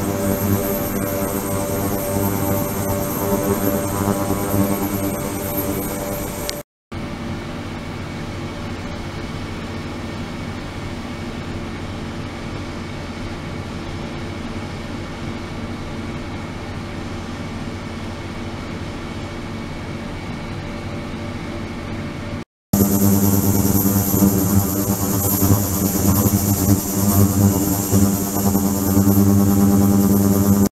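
Ultrasonic cleaning tank running: a steady buzzing hum with a stack of overtones and a high whine above it. It breaks off briefly twice, and the stretch in between is quieter, with the hum weaker.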